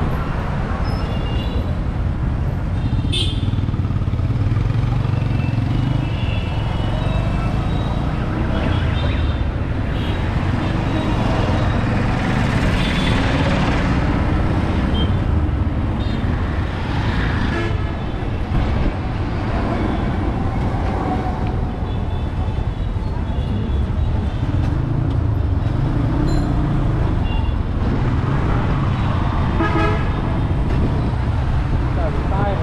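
Busy street traffic heard from a moving vehicle: a steady low engine and road rumble, with short horn toots from nearby vehicles every few seconds.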